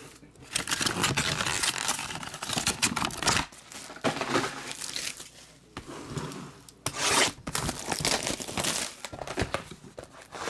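Foil wrappers of 2017 Topps Fire baseball card packs crinkling as the packs are pulled from the hobby box and stacked, in several bursts with short pauses between.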